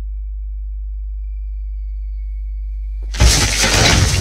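A deep, steady low drone with a faint thin high tone, then about three seconds in a sudden loud crash of a window breaking as an intruder bursts through it, with breaking debris going on afterwards.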